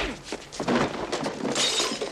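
Staged movie fistfight sound effects: a sharp punch hit right at the start, then about a second and a half of dense crashing clatter.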